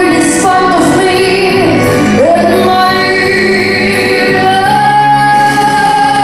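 Solo voice singing a pop song into a microphone over an amplified backing track, ending on a long held note.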